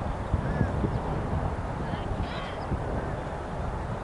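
Wind buffeting the microphone in an uneven low rumble, with a couple of faint, short distant calls, one about half a second in and one a little over two seconds in.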